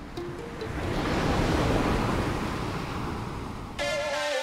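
Rushing roar of a large ocean wave breaking, swelling up over the first second or so and then slowly easing. Music fades out under it at the start and comes back in just before the end.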